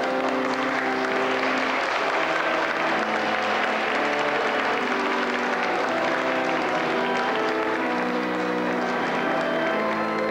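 Church organ playing sustained chords while the congregation applauds; the clapping swells about a second in and fades near the end.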